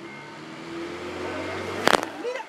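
A motor vehicle engine running with a low, steady hum, and one sharp knock near the end.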